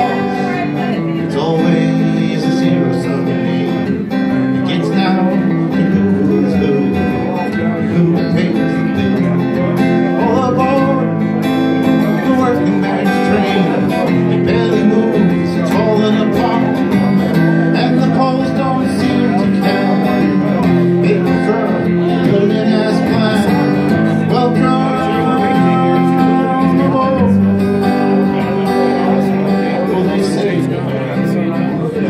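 Acoustic guitar strummed in a live solo performance of a country-style original song, with a voice singing at times over it.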